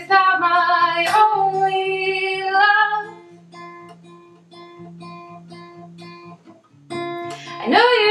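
A woman singing with her own acoustic guitar: a held sung line for the first few seconds, then the guitar plays softly alone in evenly repeated notes, and a louder strum comes in with the singing returning near the end.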